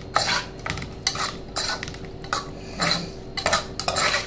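A metal spoon scraping and clinking against the side and bottom of a metal saucepan as a minced chicken salad is stirred and tossed, in uneven strokes about twice a second.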